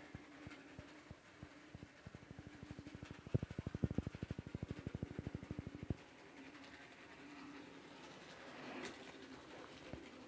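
Bachmann Thomas the Tank Engine model locomotive running slowly on its track with a faint motor hum and a rapid, even clicking from its wheels and gearing that grows louder and then stops about six seconds in. The engine is limping along, its axle bearings out of place and its gearbox bone dry.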